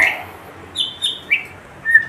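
Caged white-rumped shamas (murai batu) giving short whistled chirps, four in a row, the first two high and the later ones lower.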